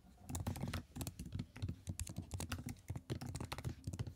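Typing on a computer keyboard: a fast, irregular run of faint key clicks.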